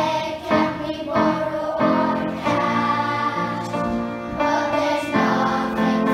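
A group of young children singing together in unison, holding long notes.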